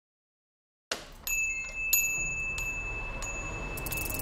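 Silence, then about a second in, high chime strikes begin in the intro of a kawaii future bass track, roughly one every two-thirds of a second, each leaving a thin high tone ringing on.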